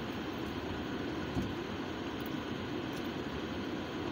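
Steady low cabin noise inside a car, with one soft thump about a second and a half in.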